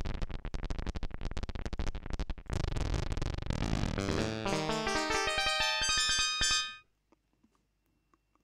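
Software synthesizer in Bespoke Synth played from a MIDI keyboard: first a fast stutter of rapidly repeated notes, then a quick run of pitched notes that climbs higher, cutting off suddenly about a second before the end.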